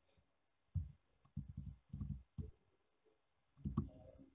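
Faint, irregular clicks and low knocks in a handful of short groups, the loudest near the end.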